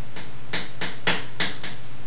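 Chalk writing on a blackboard: a string of short taps and scratches as letters are stroked out, the loudest a little past one second in, over a steady low hum.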